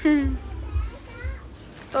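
A high-pitched voice calling out briefly at the start, its pitch falling, then a shorter vocal sound about a second in, over a low irregular rumble.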